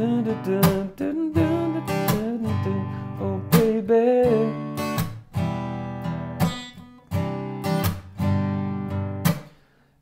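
Steel-string acoustic guitar strummed down and up in a syncopated pattern. The pattern is punctuated by sharp percussive slaps of the hand against the strings that briefly mute them. The last chord rings out and fades just before the end.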